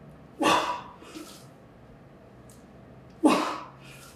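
A weightlifter's forceful grunting exhalations, one with each rep of a barbell Romanian deadlift: two short, loud bursts about three seconds apart, each falling in pitch, with faint intakes of breath between.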